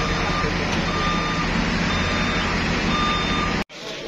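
CAT wheeled excavator's diesel engine running with a steady hum while its warning alarm beeps repeatedly at one pitch, under a second apart. The sound cuts off abruptly near the end.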